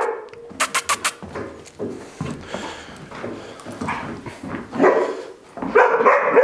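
A young German Shepherd barking in short, repeated outbursts while lunging on its lead: reactive aggression towards another dog.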